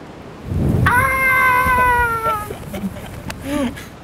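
Strong wind buffeting the microphone. Over it comes one long high-pitched vocal squeal that falls slightly in pitch and lasts about a second and a half, then a few short vocal sounds.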